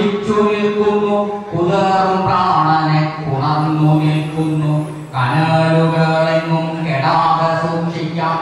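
A man chanting a Malayalam poem to a slow melody, holding long, steady notes in phrases of a few seconds, with short breaths between them.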